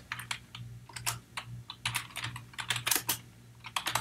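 Typing on a computer keyboard: quick, irregular keystrokes in short runs with brief gaps, as a line of code is typed out.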